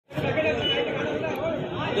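Speech: a man talking into a handheld microphone, with the chatter of other voices around him.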